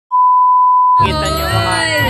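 A steady 1 kHz test-tone beep, the classic colour-bars tone, lasting about a second, then cut off as music with a voice sliding in pitch begins.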